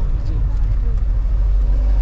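Steady low rumble of a passenger van's engine and tyres, heard from inside the cabin while it drives.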